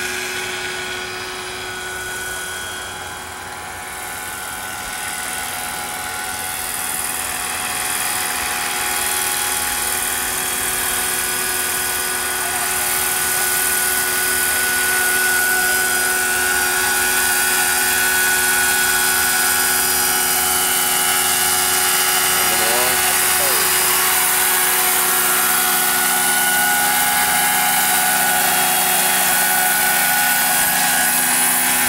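Large radio-controlled scale model of an NH90 helicopter flying: a steady whine of its drive and rotors with several held tones. It grows louder through the first half as the model comes closer, then holds steady.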